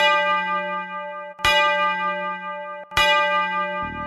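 A bell struck three times, about a second and a half apart, each stroke ringing out and fading before the next.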